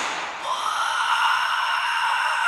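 A long, high-pitched scream from an animated character in the trailer, held on one note, starting about half a second in.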